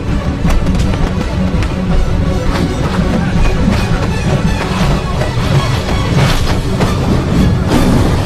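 Loud action film score with a heavy, dense low end, with a few sharp hits from the fight layered over it.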